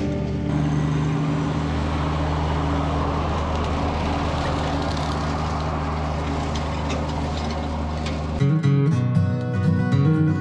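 Kubota BX compact tractor's three-cylinder diesel running steadily under load while its rotary cutter mows tall weeds. About eight seconds in, this cuts off abruptly and acoustic guitar music starts strumming.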